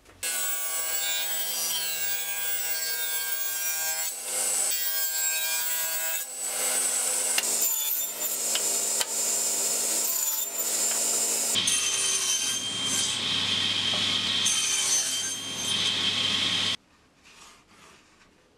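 Table saw running and cutting spruce boards on a crosscut sled, a steady motor whine under the noise of the blade in the wood. The sound changes about two-thirds of the way through and stops abruptly shortly before the end.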